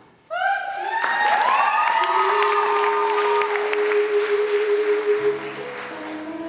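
Audience bursting into applause and cheering, with several voices rising in pitch in shouts of approval, starting suddenly just after the music stops. Near the end a new piece of music starts under the clapping.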